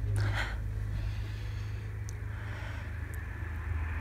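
A person sniffing a fleece blanket: one short breathy sniff near the start, over a steady low hum.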